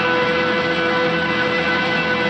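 Electric guitar holding one long sustained note through an amplifier, played live in a blues performance.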